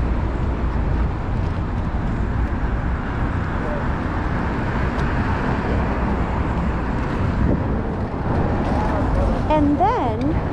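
City street traffic noise with a steady low rumble of wind on the microphone; the traffic noise swells in the middle as a vehicle goes by.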